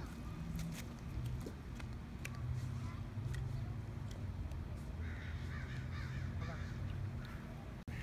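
Faint lakeside outdoor ambience: a steady low hum with scattered small clicks, and faint distant calls or voices about five seconds in.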